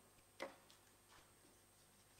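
Near silence of a quiet meeting room, broken by one sharp click about half a second in and two fainter ticks shortly after.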